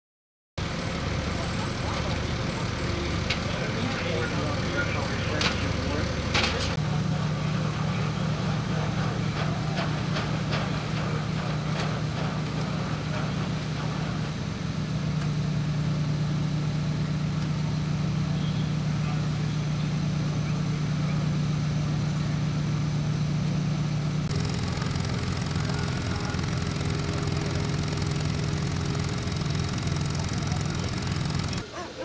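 Fire apparatus diesel engines idling with a steady low hum, its pitch shifting abruptly about a quarter of the way through and again near the end, with a few sharp clicks early on and indistinct voices.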